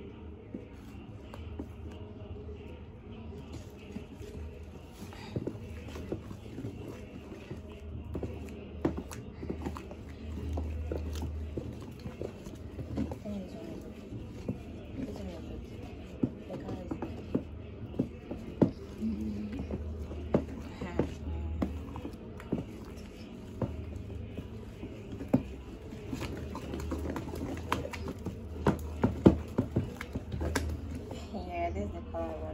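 A wooden spoon stirring thick, foamy liquid soap in a plastic basin: wet squelching with many sharp knocks of the spoon against the basin, more frequent in the second half. Background music and voices run underneath.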